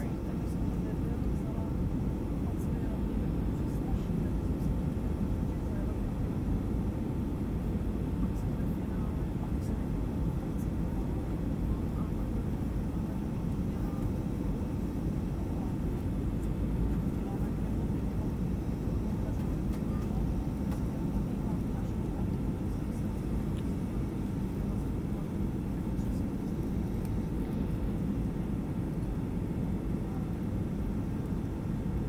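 Steady cabin noise inside a Boeing 757-200 on its landing approach: a low, even roar of the jet engines and the air rushing past the fuselage.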